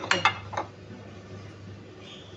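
Ceramic bowls clinking against each other and the countertop as they are moved, several quick clinks in the first half-second, then a faint steady low hum.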